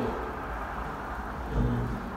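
A pause in a man's speech: a steady low room rumble, with a short drawn-out hesitation sound from the man's voice about one and a half seconds in.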